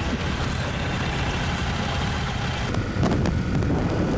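Honda C90 single-cylinder four-stroke engines running steadily, with wind on the microphone; about three seconds in the sound steps up louder into the engine and wind noise of riding.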